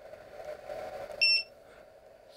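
Yonhan smart battery charger giving one short, high electronic beep about a second in, the key-press beep of its mode selection button. Its small cooling fan hums steadily underneath.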